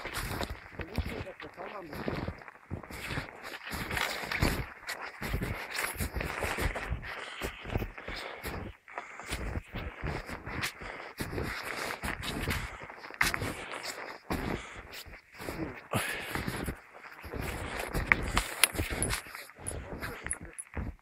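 Footsteps wading through deep, knee-high snow: an irregular run of soft crunching, swishing steps, with snow-laden branches brushing against the walker.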